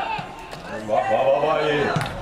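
A man's voice, the match commentator, speaking a drawn-out phrase that starts a little under a second in, over faint stadium background.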